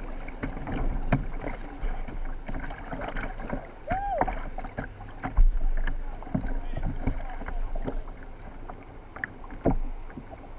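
Kayak paddle strokes splashing in river water, with the rush of moving whitewater around the boat. A short pitched sound that rises and falls comes about four seconds in.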